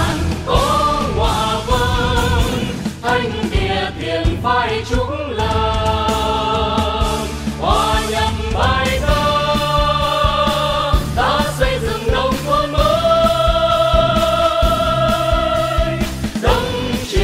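A song sung by a group of voices over instrumental backing with a steady beat. The voices hold long notes through the last few seconds.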